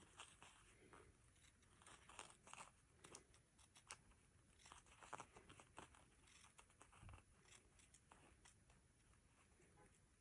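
Faint, irregular snips of small scissors cutting through fabric backed with fusible, a few clicks every second or so.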